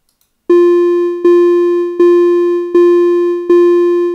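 Computer playback of a quarter-note rhythm in 3/4 time: a single electronic note at one pitch, sounded evenly about every three-quarters of a second, five times, starting about half a second in. Each note fades a little before the next.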